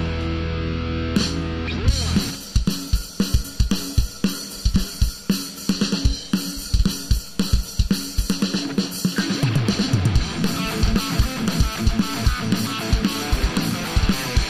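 Live heavy-metal band: a held, distorted electric-guitar chord rings out, then a Tama drum kit with Zildjian cymbals plays a pounding beat of kick drum, snare and cymbals. The guitars and bass come back in under the drums about ten seconds in.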